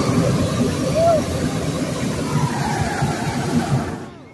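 Hot air balloon's propane burner firing overhead in the basket: a loud, steady rush that cuts off suddenly at the end.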